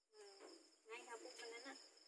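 Crickets chirping steadily in a high, pulsing trill, with faint voices murmuring underneath twice.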